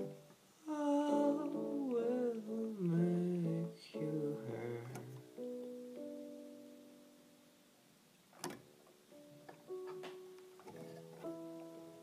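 Synthesizer music played on an iPhone: a gliding, wavering melody line over chords for the first few seconds, then sustained chords slowly fading, a single sharp click about eight and a half seconds in, and a few new held notes near the end.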